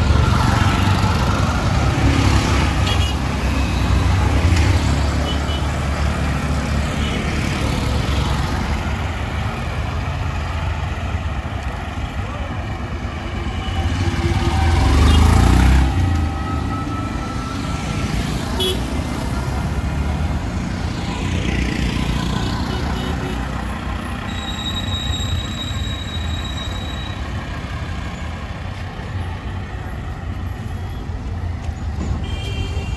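Busy road traffic passing close by: the engines of trucks, motorcycles and auto-rickshaws going past, with horn toots now and then. The loudest vehicle goes by about halfway through.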